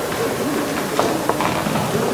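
Indistinct murmur of voices in a large hall, with two small knocks about a second in.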